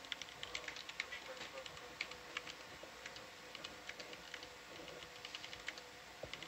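Typing on a computer keyboard: irregular runs of quick key clicks, a few a second, over a faint steady hum.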